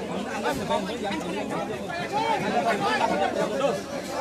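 Crowd of men talking over one another, many overlapping voices at once.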